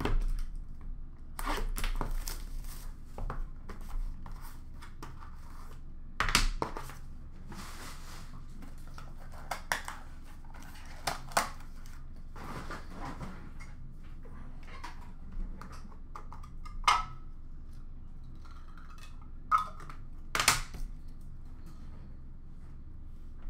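Trading-card packaging being handled and opened by hand: bouts of rustling and tearing with scattered sharp clicks and knocks, the loudest about six seconds in and near the end.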